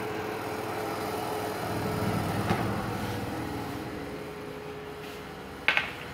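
Electric oven running with a steady hum that slowly fades, with a light knock about halfway and a sharper clack near the end as the metal baking tray is pulled out.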